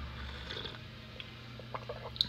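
A faint sip of hot coffee from a mug about half a second in, followed by a few small clicks, over a steady low hum.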